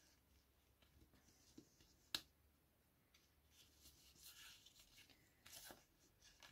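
Near silence with faint rustling of hands handling string and paper, and one sharp click about two seconds in.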